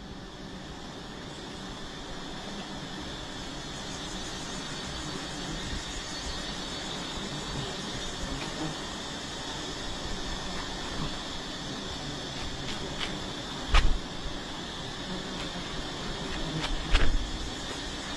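Steady buzzing of a swarm of wild honeybees around a comb being cut with a knife, with two loud knocks near the end.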